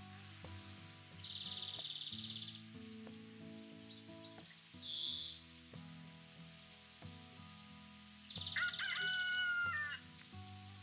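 A rooster crowing once, loudly, near the end, over soft background music. Two shorter high, buzzy calls come earlier.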